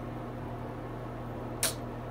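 Steady low electrical or mechanical room hum, with one short hiss about a second and a half in.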